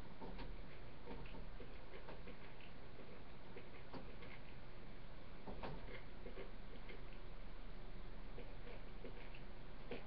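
Faint, irregularly spaced small clicks and ticks over a steady low hiss from the microphone in a quiet room.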